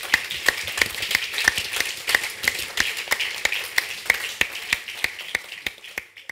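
Audience applauding, with one pair of hands clapping close to the microphone at about three claps a second over the crowd's claps. The applause thins out toward the end.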